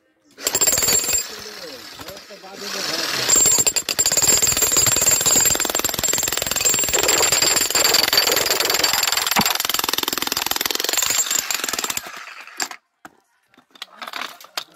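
Electric demolition hammer with its chisel bit driven into a crack in a stone boulder, hammering rapidly to split it. A short burst about half a second in, a brief easing off, then continuous hammering from about three seconds in until it stops near the end.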